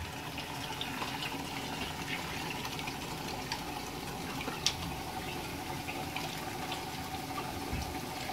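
Water running steadily into a shallow seawater tank, a constant splashing trickle with scattered small drips and ticks, one sharper tick about halfway through, over a faint steady hum.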